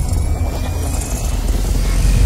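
Cinematic logo-intro sound effect: a deep, steady rumble with a noisy hiss above it.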